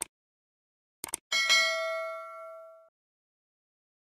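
Sound effects of mouse clicks followed by a notification bell: a click at the start, a quick double click about a second in, then a single bell ding that rings for about a second and a half and fades out.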